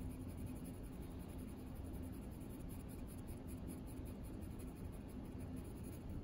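A 2B graphite pencil shading on paper: faint scratching in quick, repeated back-and-forth strokes as a square of a value scale is darkened.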